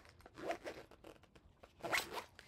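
Zipper on a quilted fabric travel pill case being pulled open: a few soft zip strokes, the loudest near the end, with rustling of the fabric as it is handled.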